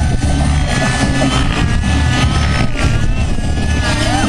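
Radio-controlled model helicopter flying aerobatics close by, its engine and rotor pitch rising and falling together as it manoeuvres, with music playing underneath.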